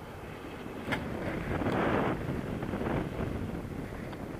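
Rushing air buffeting a camera microphone in paraglider flight, swelling about a second in and staying strong through the middle. A single sharp click comes just before the swell.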